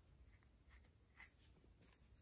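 Faint soft scratching of yarn drawn over metal knitting needles as stitches are worked, with a small sharp click of the needles near the end.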